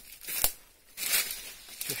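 Two crunching footsteps on dry fallen leaves and brittle ground, the first with a sharp snap about half a second in, the second longer and crackling about a second in.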